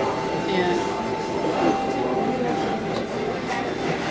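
Restaurant dining-room chatter: many overlapping voices at once. A steady high hum runs through the first three seconds.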